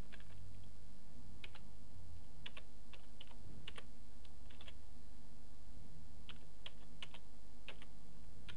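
Typing on a computer keyboard: irregular keystrokes, some in quick runs, over a steady low hum.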